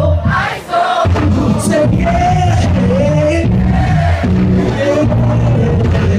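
A live band playing an R&B/alternative song, with electric bass and keyboards under a wordless sung vocal line that glides up and down. The band drops out for a moment about half a second in, then comes straight back.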